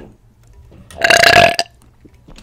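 A woman burps once, loud, about a second in and lasting about half a second.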